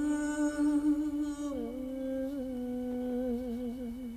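A woman's singing voice holding one long note, which steps down slightly about a second and a half in and takes on a wavering vibrato toward the end.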